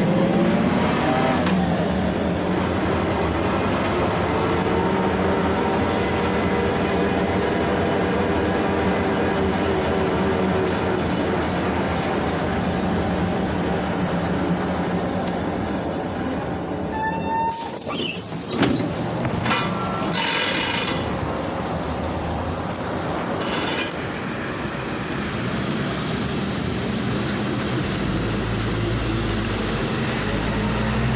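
Cabin noise of a PAZ-32054 bus under way: its ZMZ-5234 V8 petrol engine and gearbox whine, rising in pitch as it pulls away and then slowly falling as it slows. About halfway through there is a short burst of hiss and rattling as the doors work at a stop.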